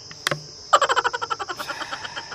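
A frog calling: a fast run of about fifteen croaking pulses that starts loud just under a second in and fades away, over a steady high insect buzz. A short click comes just before it.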